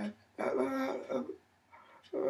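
A woman's voice making wordless vocal sounds: a short sound at the start, then one sustained voiced utterance of about a second.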